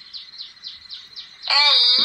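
A quick series of short, high, falling chirps, about four to five a second, typical of a small bird. Near the end a loud, high-pitched voice says the letter 'L'.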